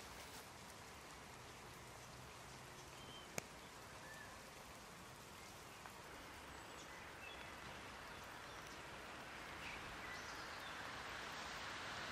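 Light rain beginning to fall, heard as a faint steady hiss that grows louder toward the end. A few faint bird chirps and one sharp click about three and a half seconds in sit on top of it.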